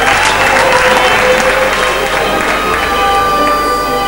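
Audience applause that breaks out at the start and fades away over the first two to three seconds, over steady violin music.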